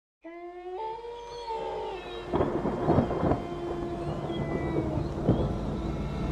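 Thunderstorm sound effect: steady rain with thunder rumbling, heaviest about two and a half to three and a half seconds in, over held pitched tones that start the moment the sound begins.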